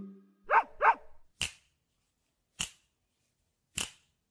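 A dog barks twice in quick succession about half a second in, as the last note of a chime fades. Three sharp clicks follow, about a second apart.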